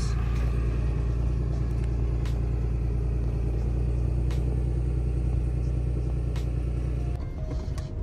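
Tractor engine running with a steady low rumble. Near the end the rumble gives way to a quieter, thinner sound.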